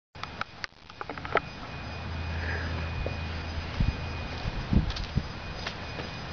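Footsteps on pavement, dull thuds in the second half, over a low steady hum; a few sharp clicks near the start. The 1941 Indian Four's engine is not running.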